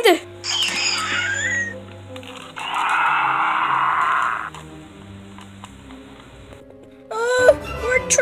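Soft background music under a short rising-and-falling cry, then a raspy roar of about two seconds, as of a dinosaur. Voices start again near the end.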